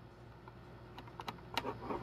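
A handful of keystrokes on a computer keyboard, starting about a second in.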